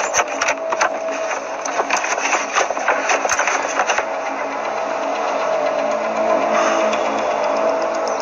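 Rapid clicking and rattling of a hand rummaging inside a car's dashboard compartment for about the first four seconds, over a steady sustained tone that carries on after the clicking stops.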